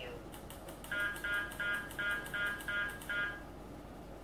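Electronic beeping from a Uniden R7 radar detector: a run of about eight short, pitched beeps, roughly three a second, starting about a second in and stopping after about three seconds.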